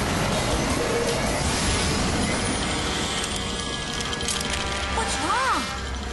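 Cartoon soundtrack of background music mixed with a dense mechanical sound effect as a control on a villain's machine is worked. One tone rises and falls once about five seconds in.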